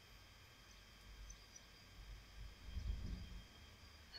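Quiet room tone through a computer microphone: a faint low rumble that swells slightly in the second half.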